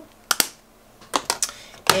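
Hard plastic makeup compacts clicking and clacking as they are handled in a clear acrylic drawer: two quick clicks, then three more about a second later and one near the end.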